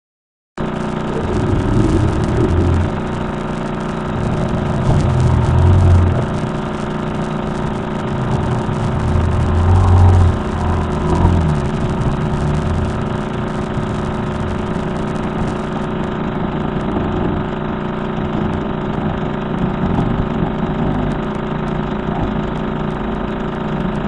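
Recording presented as a radio-telescope capture of a strange signal: a steady drone of many held tones over a low rumble that swells a few times in the first half. It starts and stops abruptly.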